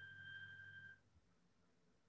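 Near silence: a faint steady high-pitched tone and a low hum that cut off about a second in, leaving dead silence, as when a video call's noise suppression mutes the line.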